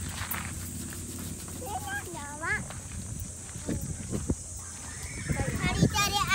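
Children's high, wavering squeals, about two seconds in and again near the end, as they ride a swinging rope-net swing, with a few sharp knocks in between and a steady high hiss behind.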